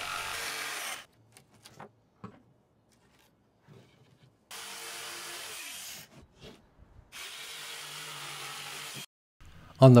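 Corded jigsaw cutting through 5/8-inch plywood, running steadily for about a second. After a pause with a few light handling clicks, it makes two more short cuts of about one and a half and two seconds.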